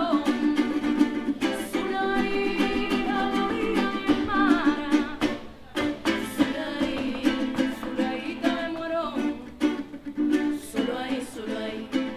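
Live music: a jarana jarocha strummed in a steady rhythm together with a Colombian button accordion, and two women singing over them.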